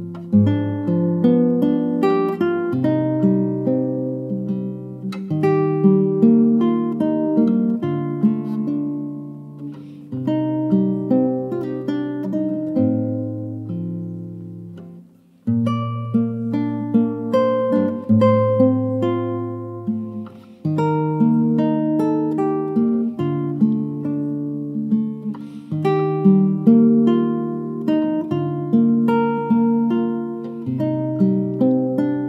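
Nylon-string classical guitar played fingerstyle: a melody of plucked notes over sustained bass notes. About halfway through, a phrase fades out and stops briefly, then the melody starts again.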